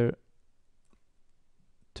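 A faint computer mouse click about a second in, amid near silence.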